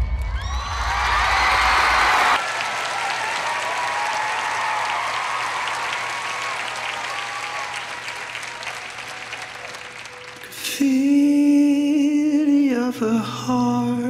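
A theatre audience applauding and cheering after a song's final held note cuts off, the applause fading over several seconds. Near the end a slow song begins, opening on a long sustained note.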